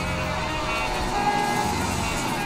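Road traffic with a bus going by, under soft background music.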